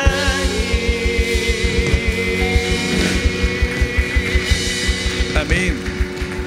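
Live worship band playing: a drum kit beating out rapid, even low drum hits under sustained guitars, keys and a held, wavering sung note.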